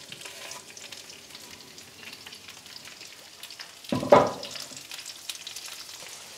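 Salmon and halved cherry tomatoes frying in olive oil in a frying pan, a steady sizzle. A loud knock or clatter cuts in about four seconds in.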